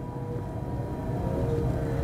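Low, steady road and tyre rumble inside the cabin of a moving Dacia Spring electric car, with a faint thin whine over it.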